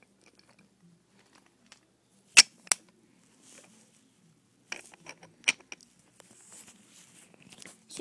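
Wooden toy train cars being moved by hand on wooden track, giving a few sharp clacks as they knock and their magnetic couplings snap together: two loud clacks close together a little past two seconds in, then several lighter clicks about five seconds in, with faint rubbing and rolling between.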